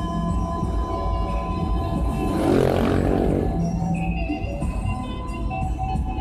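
Music from the car radio playing steadily, with a rushing noise that swells and fades about halfway through.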